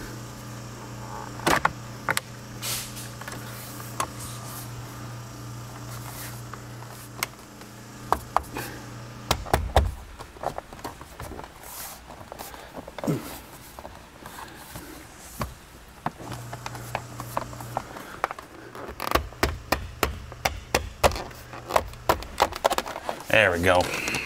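Plastic A-pillar trim panel of a Honda Civic being pressed and worked back into place by hand. Scattered clicks and knocks of plastic run throughout, coming thicker near the end as the clips are pushed home.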